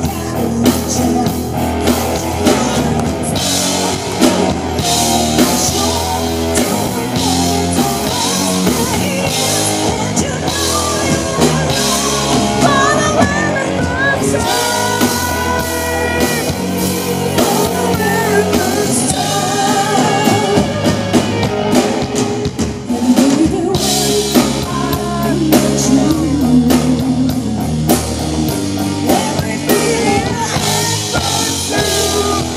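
Live rock band playing a melodic rock song: a woman singing lead over drum kit, electric bass and keyboards.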